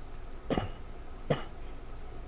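A person coughing twice, short and sharp, under a second apart.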